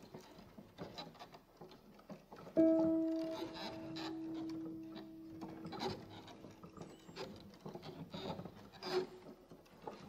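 Recording of an experimental sound-art piece: scattered small rustles, scrapes and clicks, with a single piano note struck about two and a half seconds in and ringing away over several seconds. The piano tones are unintended but unavoidable in this piece.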